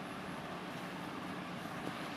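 Steady low hiss and rumble of a lit gas stove, with a steel kadai of curry and a pot heating on it.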